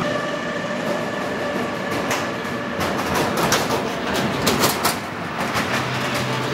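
Motorized cargo tricycle driving along a street: its motor runs with a steady tone while its open metal cargo bed rattles and clatters, the clatter busiest in the second half.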